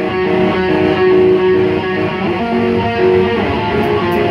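Live emocrust band's electric guitars playing a loud, melodic picked passage over bass, with a repeating note pattern and no cymbals or drums behind it. A couple of drum hits come in near the end.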